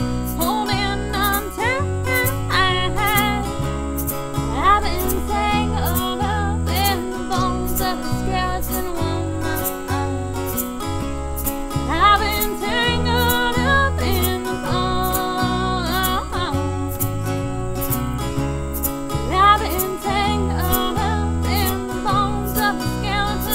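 Acoustic band playing a song: small-bodied acoustic guitars strummed over a steady bass line, with a sung vocal.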